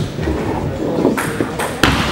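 Table tennis ball clicking sharply off bat and table as a serve is played, with a few crisp ticks, the last two close together near the end.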